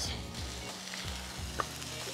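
Pork chops sizzling on the hot flat-top of a Pit Boss Ultimate Griddle, a steady frying hiss, with one short click about one and a half seconds in.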